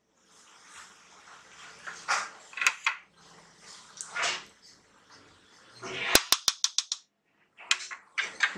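Curry gravy boiling in a wide pan while a spatula stirs it, with a few soft scrapes and swishes. About six seconds in comes a quick run of about six sharp clicks.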